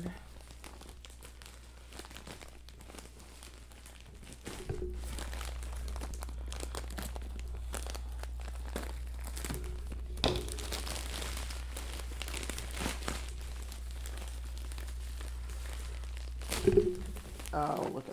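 Plastic poly mailer bag crinkling and rustling as it is pulled and torn open by hand, in many small irregular crackles.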